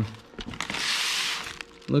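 Rustle of plastic packaging lasting about a second, as a tachometer circuit board wrapped in plastic and bubble wrap is handled.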